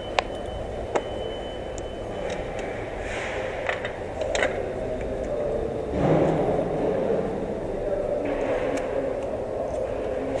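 Steady rumble of an underground car park, with a few sharp clicks and knocks and a swell of noise about six seconds in.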